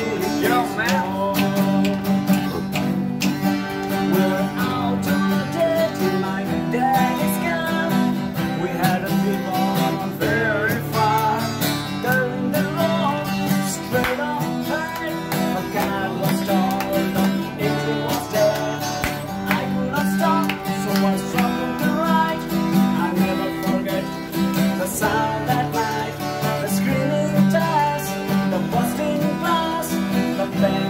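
Acoustic guitar strummed steadily, accompanying a man singing.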